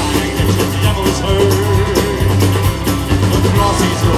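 A live country-rock band playing: acoustic guitar, electric guitar, bass and drums with keyboard, under a steady bass line and a wavering melody line.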